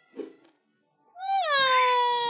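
A long wailing vocal cry, starting a little higher, dropping and then held on one steady note, beginning a little over a second in after a near-silent gap.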